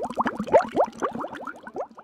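Water bubbling: a quick run of short rising blips, about six a second, fading toward the end.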